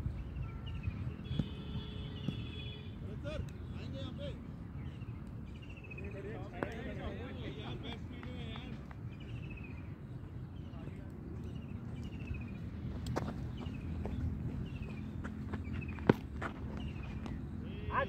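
Outdoor cricket-ground ambience: a steady low rumble of wind on the microphone, distant players' voices, and a string of short, high, falling chirps, with one sharp knock about sixteen seconds in.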